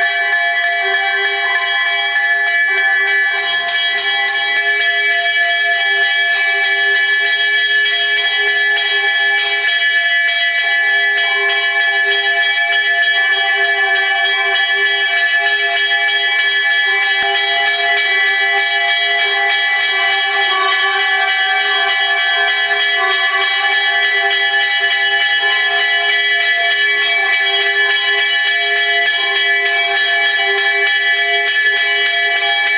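A temple bell rung continuously with rapid, even strikes, its ring held up between strokes, through the lamp offering (aarti) at the shrine.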